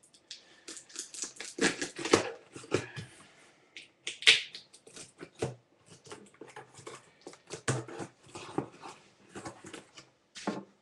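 Cardboard shipping box being opened and its packing handled by hand: irregular rustling, scraping and light knocks, with a short, sharp, high sound about four seconds in.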